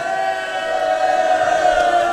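Men's voices chanting together, holding one long, steady note.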